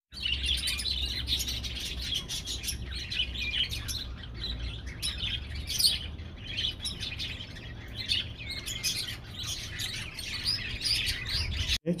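A chorus of small birds chirping and twittering, many calls overlapping, over a steady low hum; it starts and stops abruptly.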